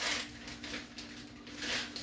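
Clear plastic zipper bag rustling and crinkling in short bursts as it is handled and pressed shut, over a faint steady hum.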